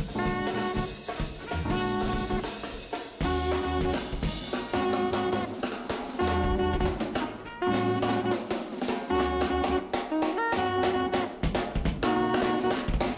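Live jazz quartet: trumpet over Hammond organ and drum kit. The music moves in held phrases about a second long, with a walking bass line underneath and drum hits between the phrases.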